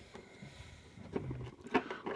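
Faint handling sounds of fingers working open a perforated cardboard advent-calendar door and picking at the small LEGO pieces inside: a low rustle with a few light clicks and taps.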